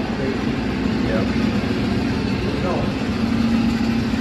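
A steady low mechanical hum, like an engine idling, with a constant low tone and no change in level. Faint voices murmur in the background.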